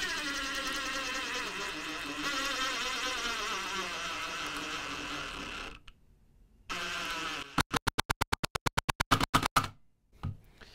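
DeWalt DCF887 20V brushless impact driver in its lowest speed mode driving a long screw into wood. The motor runs with a steady whine for about six seconds, cuts out briefly, runs again, then the impact mechanism hammers in rapid even knocks for the last couple of seconds. The driver runs without hammering until the screw is almost driven.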